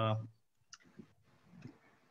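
A man's drawn-out "uh" that fades about half a second in, then a quiet pause with a few faint clicks.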